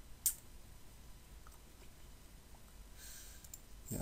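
A single sharp computer mouse click about a quarter of a second in, followed by a few faint ticks of mouse or keyboard use at low level.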